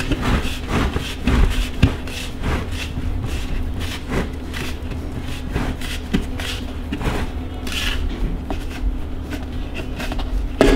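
Plastic lid of a five-gallon bucket being pried off by hand, making a run of clicks, creaks and scrapes as the tabs around its rim are worked loose one after another. A steady low hum runs underneath.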